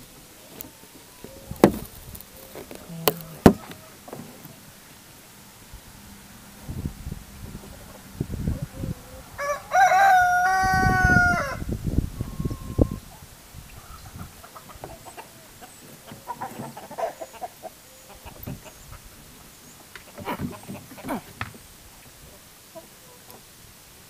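A rooster crows once, about ten seconds in, a single long held call. A few sharp knocks come in the first few seconds.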